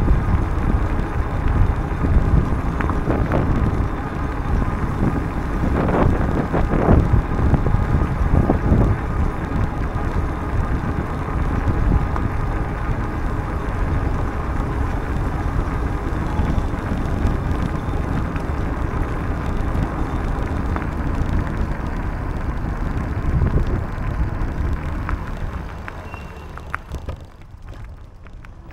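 Wind rushing over the microphone of a camera riding on a moving bicycle, mixed with tyre noise on a paved path and a few small knocks from bumps early on. The rush dies down near the end.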